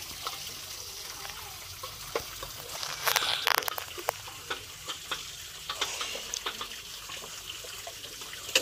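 Dishes being washed by hand in basins of water: water sloshing and splashing, with light clicks and knocks of plates and utensils, busiest about three seconds in.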